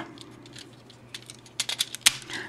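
Plastic clicks and taps from the Car Carrier Ressha toy train's parts being folded in and snapped together by hand, a quick run of clicks in the second half.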